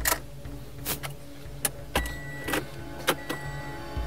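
A car with a low steady hum, with several sharp clicks and knocks scattered through.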